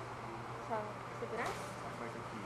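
People's voices talking briefly in a hall, over a steady low hum.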